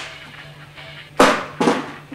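Two sharp cracks about half a second apart from a Gamo Extreme pump-action CO2 air rifle being fired, over background music.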